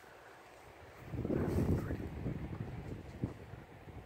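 Wind buffeting the phone's microphone outdoors: a quiet moment, then a gust of low, ragged rumble about a second in that eases off after another second.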